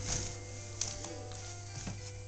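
Quiet music of held notes playing, with a couple of faint taps, one just under a second in and one near the end.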